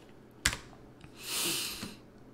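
A single computer-keyboard key click about half a second in, then a soft hiss lasting under a second.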